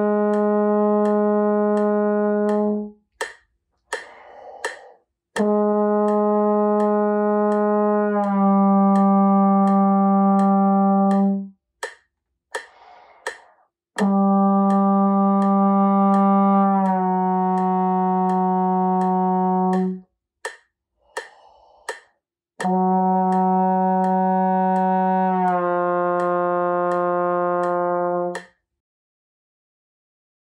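Trombone playing slow long tones: each held note of about three seconds slides down by a glissando into a lower held note, in phrases of about six seconds with quick breaths between. A steady click track ticks about twice a second underneath.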